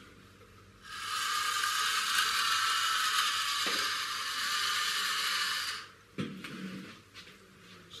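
Small solar-powered toy motor and its plastic gears whirring steadily for about five seconds under the lamp's light, then stopping, followed by a brief low knock.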